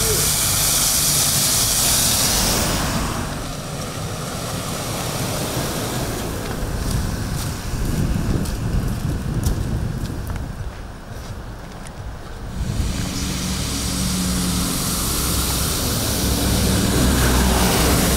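Icy street sounds: a vehicle's tyres on a frozen, snow-crusted road for the first few seconds, then short crunching footsteps on an iced pavement, and from about two-thirds of the way in, a bus engine idling with a low steady hum.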